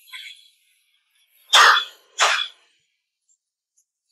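A man coughing twice, two short harsh coughs about half a second apart.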